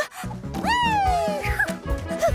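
Upbeat cartoon music starts with a steady bouncy beat. Over it, a single high gliding cry rises sharply and then falls away slowly.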